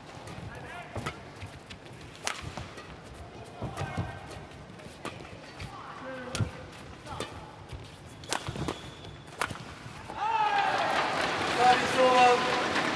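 Badminton rally: sharp cracks of rackets striking the shuttlecock, roughly one a second, with short squeaks of shoes on the court between them. About ten seconds in, the crowd breaks into loud cheering and shouting as the point is won.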